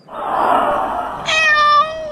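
A cat: about a second of breathy hissing, then a single steady, drawn-out meow in the second half.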